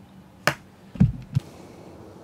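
A single sharp click, then about half a second later two dull low thumps a third of a second apart, then a faint steady background hiss.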